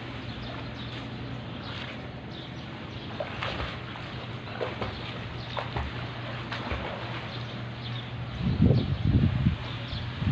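Poolside ambience: a steady low hum under light splashing from a swimmer's strokes, with low rumbling gusts of wind on the microphone about eight and a half seconds in.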